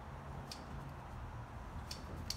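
Quiet room tone in a pause of the narration: a faint steady low hum with two faint ticks, about half a second in and near the end.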